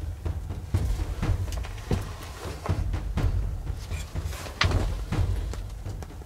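Background music dominated by deep drums, with repeated percussive hits over a low rumble.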